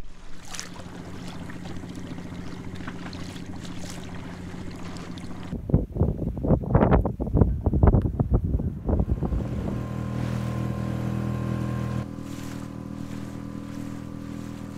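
Small outboard motor on an inflatable dinghy running steadily, with rushing water and wind on the microphone. About halfway through, a few seconds of loud voices break in over it.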